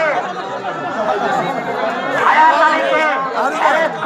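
Men's voices talking over one another, with crowd chatter beneath; one voice grows louder about halfway through.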